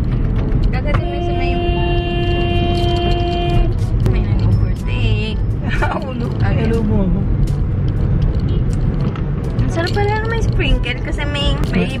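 Steady low road and engine rumble inside a moving car's cabin. About a second in, a vehicle horn sounds one steady note for roughly two and a half seconds.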